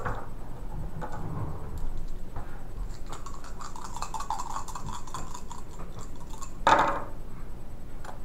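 Plastic game dice clicking and rattling together in a hand for a few seconds, then a brief louder sound as they are thrown onto the play mat.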